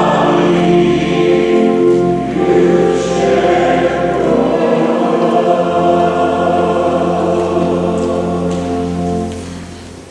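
A choir singing a slow hymn in long held notes, fading away near the end.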